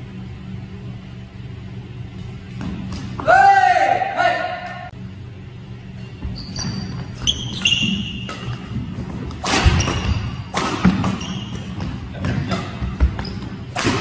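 Doubles badminton rally on a wooden indoor court: sharp racket strikes on the shuttlecock, the loudest about ten seconds in and again near the end, with short high squeaks of court shoes. A louder pitched sound rises and falls about three seconds in.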